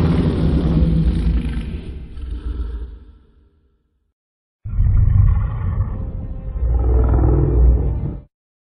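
Godzilla roar sound effects: a deep, rumbling roar fades out in the first few seconds, then after a second of silence a second roar starts abruptly and runs to the end.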